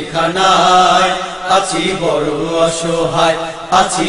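Music from a Bengali song about jail: a melodic line rises and falls over a steady sustained drone, with a few sharp strikes.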